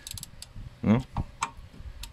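Hand tool fitted to a brake caliper bolt: a quick cluster of sharp metallic clicks at the start, then a couple more clicks.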